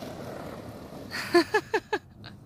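A person laughing: a quick run of four short, falling 'ha's in the second half, over a faint hiss.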